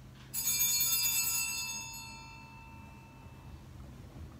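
A small bell struck once about a third of a second in, its high, metallic ring fading away over about two seconds.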